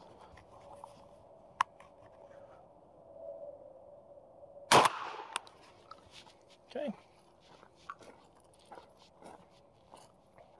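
A Beretta A300 Ultima Patrol 12-gauge semi-automatic shotgun fires a single round of 00 buckshot: one sharp shot about five seconds in with a brief echo after it. A light click comes earlier, and another follows just after the shot.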